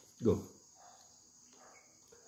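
Steady high-pitched insect chirring in the background, with the short spoken word "Go" near the start.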